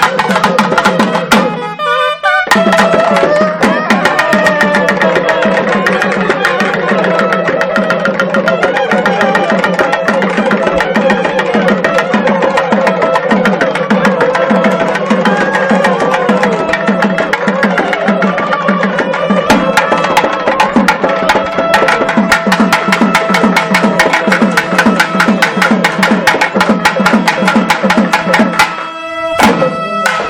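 A nadaswaram playing an ornamented melody over rapid thavil drumming and a steady low drone. The music breaks off briefly about two seconds in, then resumes and stops about a second before the end.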